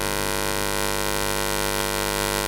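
Steady electrical buzz and mains hum from a microphone and amplifier system, unchanging throughout.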